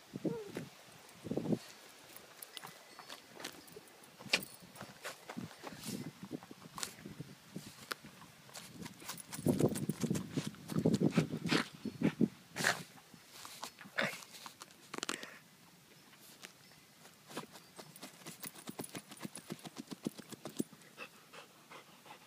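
Dachshund digging in dry dirt with its snout in the hole: a run of short scratching, scraping and crunching sounds of soil and paws, with a louder, busier stretch of digging and snuffling about halfway through.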